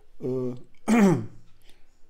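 A man's voice making two brief wordless vocal sounds, the second louder and falling in pitch.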